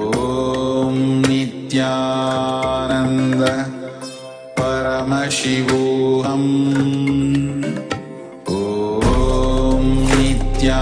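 Indian devotional music: a sung mantra chant over a steady drone, in long held phrases that fade and begin again about every four to five seconds.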